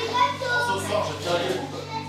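Children's voices chattering over soft background music.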